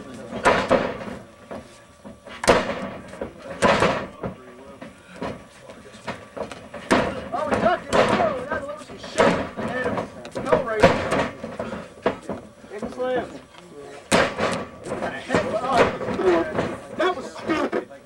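Backyard wrestling match: several sharp impacts a few seconds apart, from the wrestlers grappling, striking and hitting the ring's tarp-covered mat. Men's voices talk and laugh between them.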